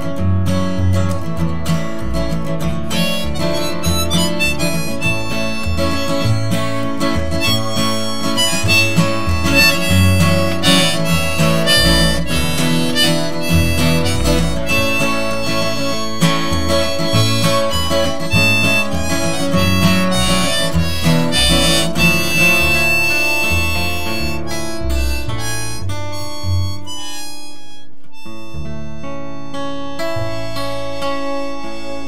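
Harmonica solo on a neck rack over strummed acoustic guitar and plucked upright bass, the instrumental close of a folk song. The playing thins out near the end into a held, ringing chord.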